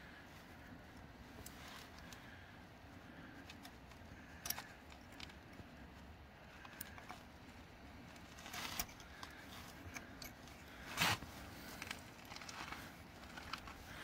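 Faint metal scraping and a few short sharp clicks as a small screwdriver pries and walks a snap ring off a transmission spanner nut on a Caterpillar RD-4, the loudest click near the end.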